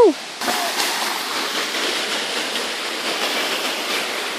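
Water rushing over the rock of a waterfall cascade close by, a steady hiss that comes in suddenly about half a second in. The tail of a shout trails off at the very start.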